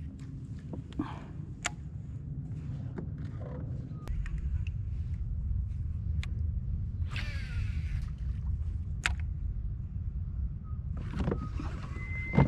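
Low steady rumble, louder from about four seconds in, with scattered sharp clicks and two short swishes as a fish is hooked and played on a rod and reel from a kayak.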